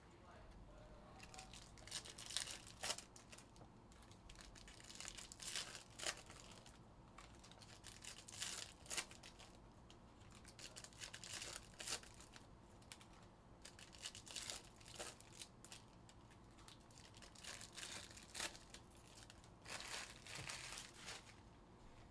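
Foil trading-card pack wrappers (Panini Prizm Baseball hobby packs) being torn open and crinkled, in a series of short, irregular rustling bursts.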